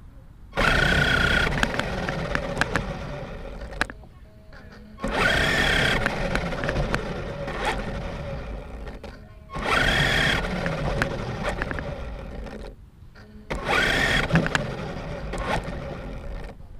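Electric RC car heard from on board, running in four bursts of throttle: each starts suddenly with a motor whine that rises and then fades, with short quieter pauses between. The car keeps cutting out, which the owner puts down to a failing battery or motor.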